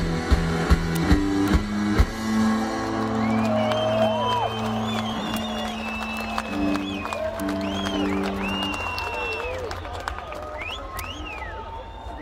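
A live rock band's song winding down. Steady drum hits stop about two seconds in, then held electric guitar and bass notes ring out and fade. Over them a festival crowd cheers, with whistles and whoops.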